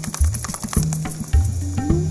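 Background music with a steady bass beat, over a quick run of short rattling clicks in the first second from a dog shaking its head, its ears and collar flapping.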